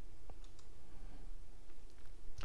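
A few faint clicks from someone working a computer, over a steady low room hum.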